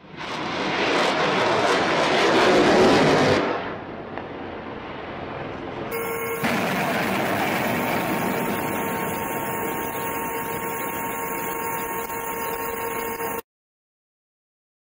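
Launch of an SSM-700K C-Star anti-ship missile from a frigate: a loud rushing roar that builds for about three seconds and then fades. About six seconds in, a steadier roar with a constant hum takes over and cuts off abruptly shortly before the end.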